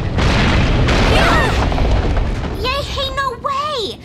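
Cartoon rumbling crash of coral collapsing and blocking an underwater tunnel, lasting about two and a half seconds, then startled cries from a character's voice.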